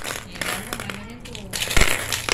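Small glass marbles clicking and rattling as they are dropped into the cups of a plastic mancala (congkak) board, with a louder clatter near the end.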